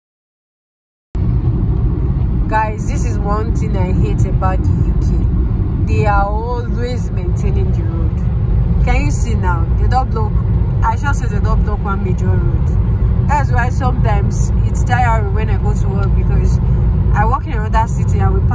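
Car cabin noise at motorway speed: a steady low rumble of engine and tyres that starts abruptly about a second in. A voice talks over it.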